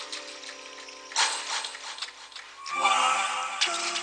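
Music: a quiet instrumental passage of held chords under a hazy high shimmer that swells about a second in. The chord changes near the end.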